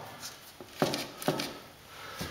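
Two sharp knocks about half a second apart, with a few fainter ticks, from a laminate floor being walked on or handled.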